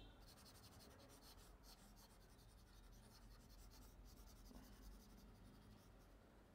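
Very faint scratching of a pen stylus rubbed quickly back and forth over a tablet surface, many short strokes in a row, as when erasing handwriting.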